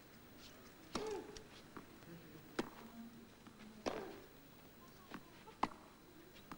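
Tennis rally: rackets strike the ball about four times, each a sharp pop about a second and a half apart, with lighter ticks between them.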